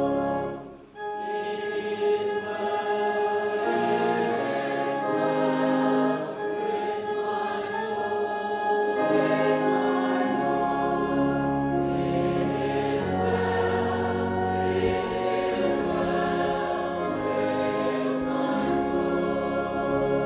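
A church choir and congregation singing a hymn together in sustained, slowly changing notes, with a brief break in the singing about a second in.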